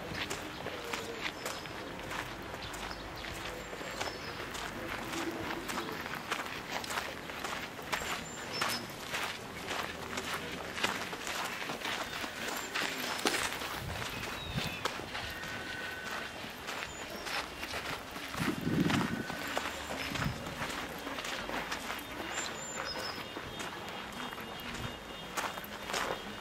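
Footsteps of someone walking at a steady pace on an outdoor path, a continuous run of short scuffing steps.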